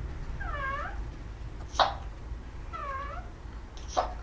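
A pet parrot giving two short calls about two seconds apart, each dipping and then rising in pitch. A sharp click falls between the calls and another comes near the end.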